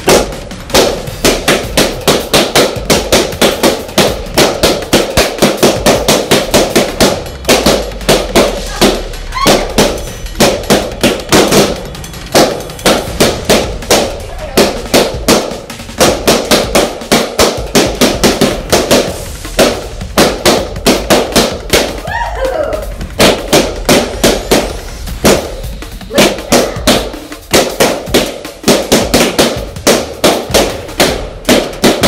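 Latex balloons bursting one after another in quick succession, two or three loud pops a second with only short pauses.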